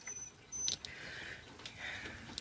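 Faint patter of light rain, with a few sharp ticks of drops landing.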